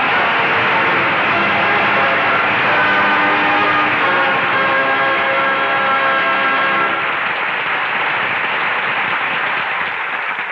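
Studio orchestra playing the closing music of a radio drama, its held chords ending about seven seconds in. Under it runs a dense, steady rush of noise that carries on after the music and fades near the end.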